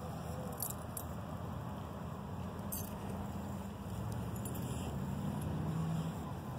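Steady outdoor background noise with a low engine-like hum, and a few light clicks and rattles.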